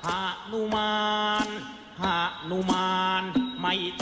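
Background music: a single voice sings long, held notes in a chant-like style, sliding into each note, with short breaths between phrases.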